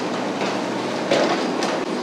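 Kubota KX71-3 mini excavator's diesel engine and hydraulics running steadily as it drives on its tracks and pushes sandy dirt with its dozer blade, with a few faint clanks.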